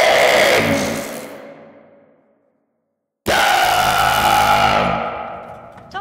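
Two loud dramatic sound-effect hits. The first is already sounding and fades to silence over about two seconds; the second cuts in suddenly about three seconds in and dies away the same way near the end.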